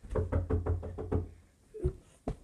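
A run of about six quick knocks, roughly five a second, over a low rumble, dying away after about a second and a half.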